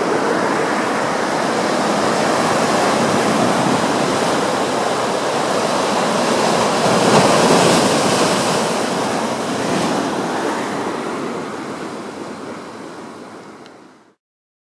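Ocean surf surging and breaking over shoreline rocks, a steady rushing wash. It swells to its loudest a little past halfway and fades away near the end.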